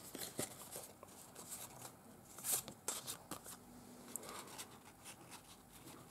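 Faint rustling and light taps of paper and card being handled, with one louder rustle about two and a half seconds in.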